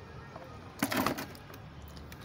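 A live catfish dropped into a plastic bucket holding a little water: a short splash and slap about a second in, followed by a few smaller knocks near the end.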